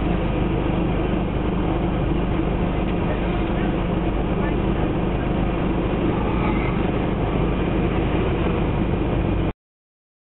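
Steady low engine hum heard from inside a stationary car, with indistinct voices mixed in; the sound cuts off suddenly shortly before the end.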